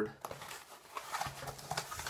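Cardboard packaging being handled and its flaps opened: soft rustling and scraping of cardboard, with a light knock about a second in.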